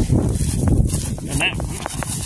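Wind buffeting the phone's microphone: a loud, steady low rumble, with a voice heard briefly in the second half.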